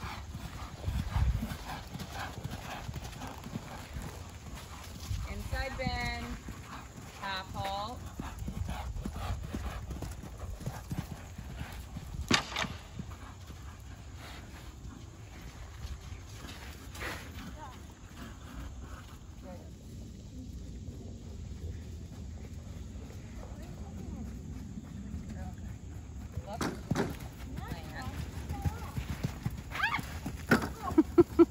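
Horse hoofbeats on arena sand as a horse is ridden around the ring, with a few sharper knocks along the way.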